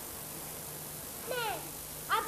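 A single short call falling in pitch, about a second and a half in, over a steady faint hiss.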